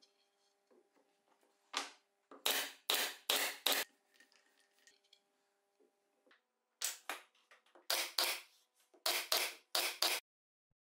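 An air-powered brad nailer firing repeatedly, driving nails through stacked, glued plywood strips to hold the laminations together. The sharp shots come in quick runs: a burst of about six near the start, a pause of about three seconds, then about nine more.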